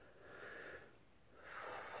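Faint breathing: two soft breaths, about half a second in and again just before the end.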